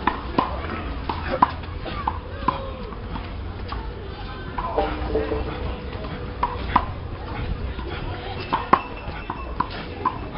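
Faint distant voices with scattered sharp clicks and knocks, often a second or so apart, over a low steady rumble.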